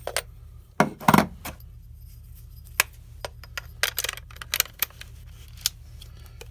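Sharp little clicks and light rattling of small hard parts being handled and fitted at a Canon camera's lens mount while a programmable dandelion focus-confirm chip is swapped in, with a louder flurry about a second in and another around four seconds.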